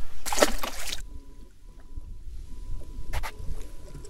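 A smallmouth bass let go over the side of a kayak, splashing into the lake in one short burst about a second long. After it, a low wind rumble and a single click near the end.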